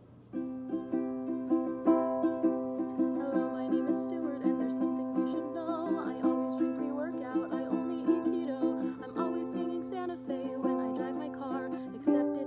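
Ukulele strummed in a steady rhythm, starting just after the beginning, with a woman's singing voice joining about halfway through.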